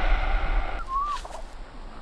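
A single short chirping call from a small animal about a second in, over faint outdoor ambience, with a low rumble fading away over the first second and a half.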